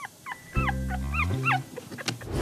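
A puppy giving about five short, high-pitched yips and whimpers, each a quick swoop in pitch, over background music.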